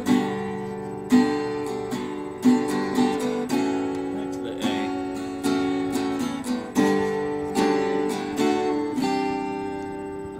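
Acoustic guitar strumming chords, with accented strums about every second or so and the chord ringing on between them.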